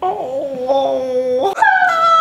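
A person's high falsetto whining wail, like mock crying, held without words. The pitch wavers, then jumps sharply higher about a second and a half in.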